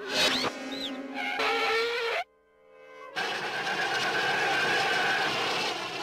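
Cartoon score with sliding, gliding notes that cuts off abruptly about two seconds in. After a short lull, a steady rushing, whooshing sound effect with a held whistling tone fills the rest.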